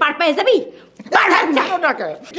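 A woman shouting in a loud, agitated voice, in two bursts.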